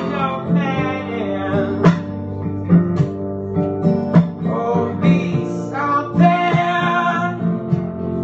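A man singing live to his own acoustic guitar accompaniment, the guitar strummed with sharp accents every second or so under a held, wavering vocal line.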